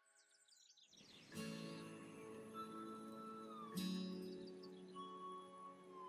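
Quiet background music that comes in about a second in, after a near-silent start. A quick run of high chirps sounds in the silent gap before it.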